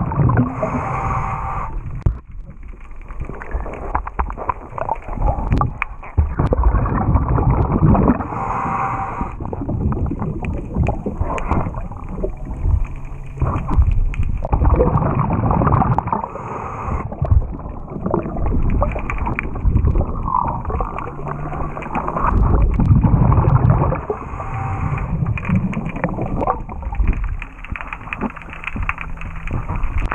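Scuba diver breathing through a regulator underwater: a short hiss on each inhale, four times about eight seconds apart, and a bubbling rumble from the exhaled air in between. Scattered knocks and scrapes come through the water as well.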